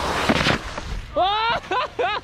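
A loud rush and splash of water as a wakeboard hits the water at speed. From about a second in, people yell excitedly.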